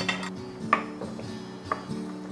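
Background music, with a utensil clinking three times against a glass mixing bowl as butter and cream cheese are beaten together.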